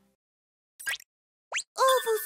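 A music tail fades to silence, broken by two short rising cartoon sound effects. Near the end a cartoon baby's voice starts, loud and bending in pitch.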